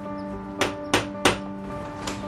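Three knocks on a wooden front door, about a third of a second apart, over steady background music.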